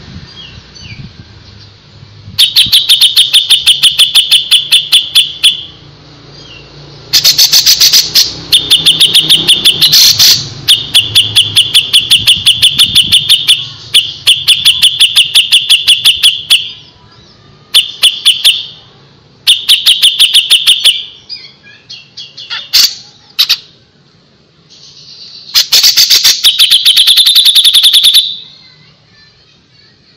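Cucak jenggot (grey-cheeked bulbul) song: loud runs of rapid, evenly repeated high notes, each run lasting one to three seconds, about nine runs with short pauses between.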